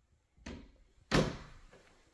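An interior door being shut: a lighter knock, then about half a second later a louder bang that echoes briefly in the empty room.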